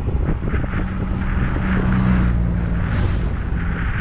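Wind rushing over the microphone of a camera mounted on a moving road bike, with a steady low hum that swells in the middle and fades near the end.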